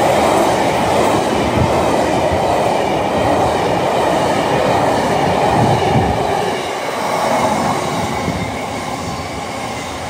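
Freight train of aggregate hopper wagons passing close by at speed: a loud, steady rumble and clatter of the wagons' wheels on the rails, with irregular knocks, easing slightly in the last few seconds.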